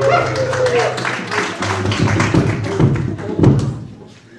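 A band's last held sung note and chord ring out, then the audience claps, with some voices among the clapping; the applause stops abruptly just before the end.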